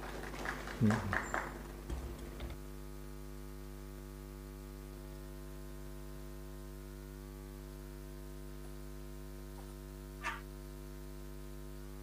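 Steady electrical mains hum on a podium microphone's sound system. In the first two seconds there are a few brief knocks and rustles, the loudest about a second in, and a short faint sound about ten seconds in.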